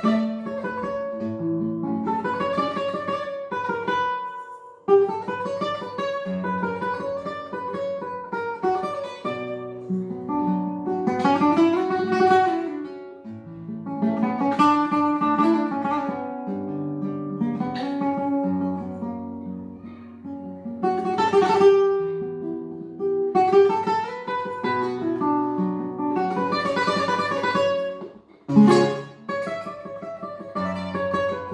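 Classical guitar played solo: a fingerpicked melody over bass notes, with full strummed chords now and then. The playing breaks off briefly about five seconds in and again near the end.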